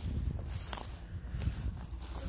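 Footsteps through dry undergrowth, a few steps spread over a steady low rumble.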